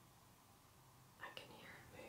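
Near silence, then a bit over a second in a woman whispers briefly.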